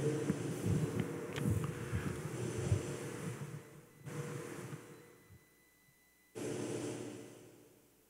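Faint room tone of an empty church sanctuary with a couple of soft knocks as the priest steps away from the altar, fading down. About two thirds of the way in, the sound drops out to dead silence for about a second, returns briefly and fades out again.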